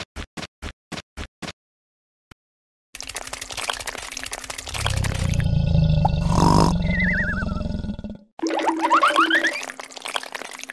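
Cartoon-style sound effects laid over stop-motion animation. First comes a quick run of short pops, about three a second, which stop early. Then, from about three seconds in, a loud low rumbling effect with a short falling warble, and near the end several quick rising whistle-like glides.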